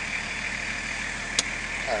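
Nissan Patrol Y61's RD28 2.8-litre six-cylinder turbo diesel idling steadily just after starting, heard from inside the cab. A single sharp click comes about one and a half seconds in.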